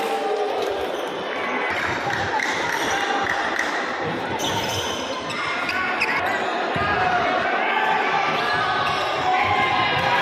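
Basketball bouncing on a hardwood gym court during play, with many people's voices in an echoing hall.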